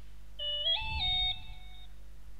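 A short electronic notification chime: a few quick stepped notes that rise and then settle on a held tone, lasting about a second and a half, with a soft low thud beneath it.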